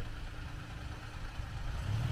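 Pickup truck engine idling with a low, steady rumble.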